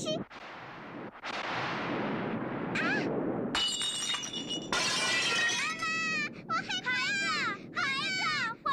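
A cartoon sound effect of a ceramic bowl smashing on the floor a little past three and a half seconds in: a sudden crash with ringing shards. Before it there are a few seconds of rushing noise, and after it a voice wails and cries out.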